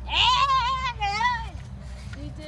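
A child's high-pitched excited squeal, wavering in pitch, followed at once by a second, shorter one.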